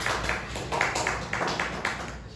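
Hands clapping in a quick, even run of about four claps a second: a few people's applause.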